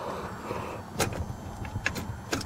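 Light mechanical clicks and knocks from a five-speed manual gear shifter being worked by hand in its bare, console-less mounting, with two sharper clicks about a second in and near the end.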